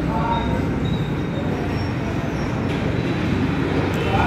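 A steady low rumble of background noise, even in level throughout, heaviest in the low end.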